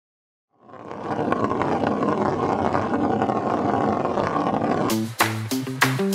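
After a brief silence, a dense, steady roaring swell fades in and holds for about four seconds. It then cuts to an upbeat music track with sharp percussive hits over a bouncing bass line.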